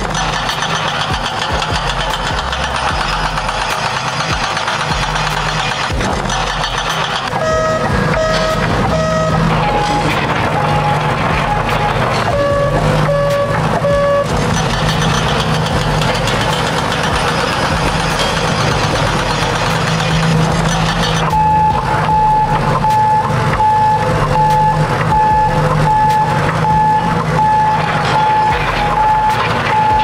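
Heavy construction machine's engine running steadily under a backup alarm. The alarm beeps in short runs at a few different pitches in the first half, then settles into a steady beeping, about one and a half beeps a second, for the last third.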